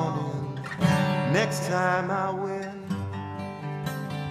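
Live band music led by strummed acoustic guitar, with a lead melody that bends and wavers in pitch from about one to two seconds in.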